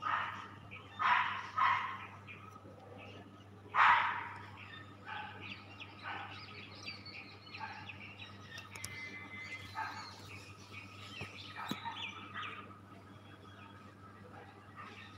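A dog barking four times in the first four seconds, then fainter bird chirps scattered through the rest, over a steady low hum.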